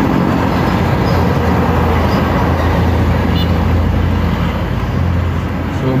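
Steady driving noise inside a moving car: a constant low engine and road hum under an even hiss, with no change in pace.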